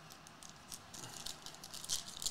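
Foil trading-card pack crinkling as it is taken off the stack and handled open: faint, scattered crackles that grow denser and louder in the second half.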